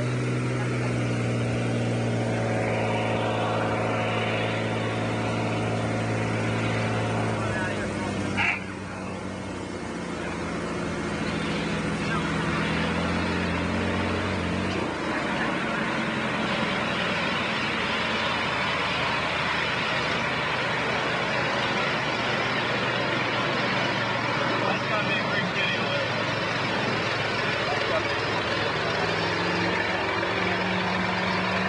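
Floatplane's propeller engine running with a steady, even note, which breaks off abruptly about eight and a half seconds in. A rougher, rushing noise then builds gradually as the plane comes down and runs on the water, and the engine's tone comes back near the end.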